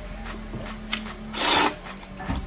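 A mouthful of instant noodles slurped in with one short, loud slurp about a second and a half in.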